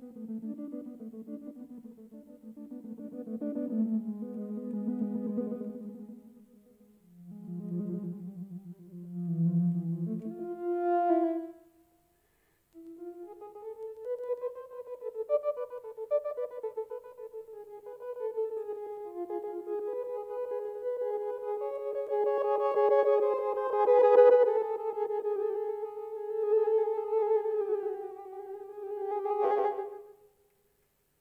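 Akai EWI electronic wind instrument playing a synthesized melody. It starts in a low register, stops briefly about twelve seconds in, then goes on in a higher register.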